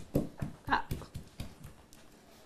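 Rapid chopping of pork lard and garlic with a knife on a wooden board, about four to five strokes a second, beating them into a battuto, with a brief exclamation partway through.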